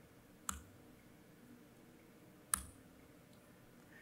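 Two short, sharp clicks at a computer, about two seconds apart, over faint background hiss.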